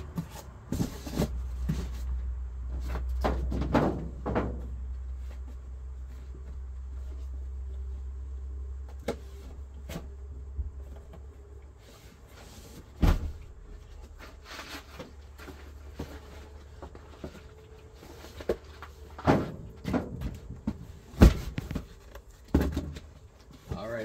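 Cardboard boxes being handled and shifted, with scraping and rustling and several sharp thumps of heavy bound books and magazines being set down, the loudest about halfway through and near the end. A low steady hum runs under the first half.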